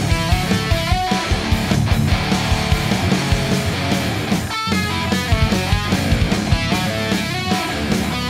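Heavy metal riffing on a Schecter C-7 SLS Elite seven-string electric guitar, with a high-gain distorted tone from an STL Tonehub Atrium Audio amp-sim preset: fast low chugging with held higher notes ringing over it.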